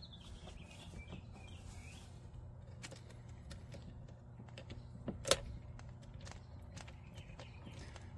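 Faint ticks of a small Phillips screwdriver bit turning out the screws of a Shurflo pump's pressure switch housing, with one sharper click about five seconds in, over a low steady hum.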